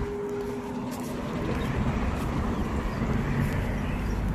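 A car driving past on the street, its engine and tyre noise growing louder after about a second.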